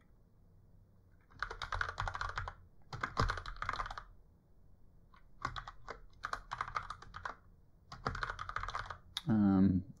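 Typing on a computer keyboard in four quick bursts of a second or two each, with short pauses between.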